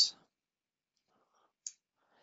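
Near silence in a pause between spoken words, broken by a single short click about a second and a half in.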